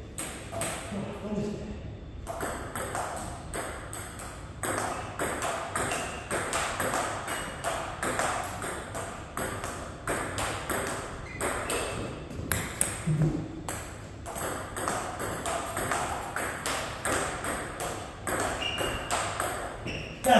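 Table tennis rally: the celluloid-style plastic ball clicking off paddles and bouncing on the table in quick alternation, about three hits a second, with a short break about two seconds in.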